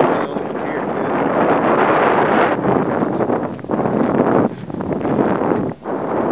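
Wind buffeting the microphone: a loud, gusting rush that dips briefly several times.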